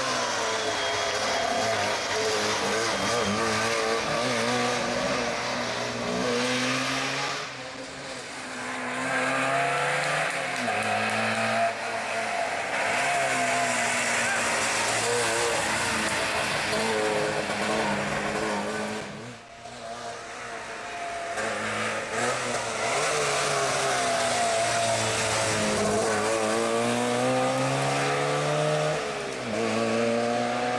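Trabant P60 rally car's two-stroke twin-cylinder engine revving hard along the stage. Its pitch climbs through each gear and falls back at every shift. The sound drops off briefly about eight and nineteen seconds in.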